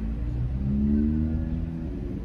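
Car engine running, heard from inside the cabin as a steady low rumble, its pitch rising slightly for about a second in the middle.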